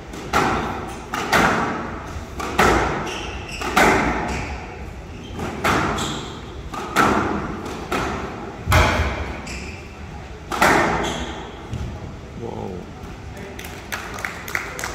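A squash rally: a squash ball struck by rackets and hitting the court walls, about a dozen sharp knocks coming every second or two, each ringing briefly in the hall.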